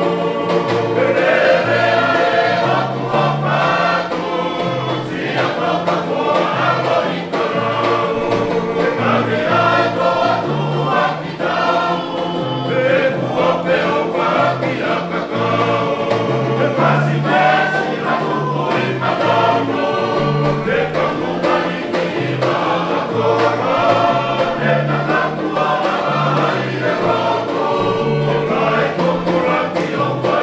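Tongan string band accompanying a tau'olunga: a chorus of men's voices singing together over strummed acoustic guitars, ukuleles and a banjo, with a stepping bass line, steady throughout.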